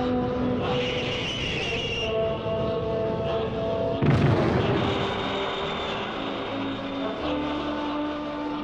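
Orchestral TV-score music from a 1970s tokusatsu series. A high whirring effect runs over the first couple of seconds, and a sudden boom comes about four seconds in.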